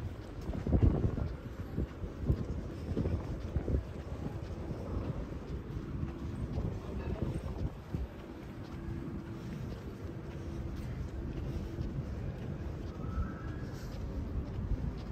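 Wind buffeting the microphone of a handheld camera on a city street, gusting in the first few seconds and then settling into a steadier low rumble over faint street noise.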